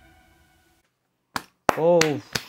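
The last held chord of a song fading out into silence. About a second later come two sharp claps or hits, and near the end a voice calls out in an exclamation that rises and falls in pitch.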